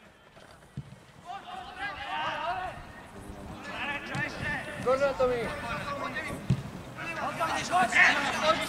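Players and coaches shouting across a football pitch, several voices overlapping, getting louder near the end, with a couple of dull thumps.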